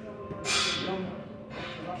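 A man speaking in short, broken phrases, with a short sharp hiss about half a second in.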